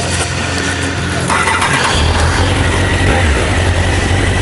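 Honda CBR1000F's inline-four engine running at idle, then picking up and running harder about two seconds in as the motorcycle moves off.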